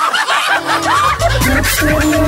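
Radio jingle for a comedy segment: a snatch of recorded laughter opens it, then upbeat music with a steady bass line comes in about half a second in.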